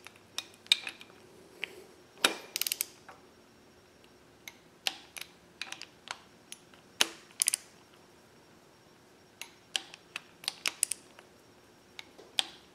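Torque wrench tightening the camshaft gear bolts toward 21 ft-lb: scattered sharp metal clicks and short runs of ratcheting, in three bunches a few seconds apart.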